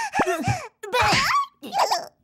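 Animated characters' gibberish voices in three or four short phrases, the pitch sliding up and down in a playful, laugh-like way.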